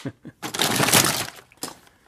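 A hand rummaging through a pile of loose die-cast toy cars and carded packs in a cardboard box: a dense clatter and rustle lasting about a second.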